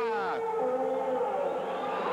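A man's voice holding one long drawn-out note for over a second, with a short falling glide near the start.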